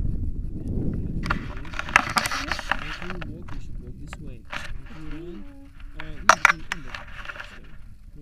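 Talking close to the microphone during a briefing, with wind buffeting the microphone at first. Noisy rustling and handling scrapes come about a second in, and a couple of sharp clicks follow later.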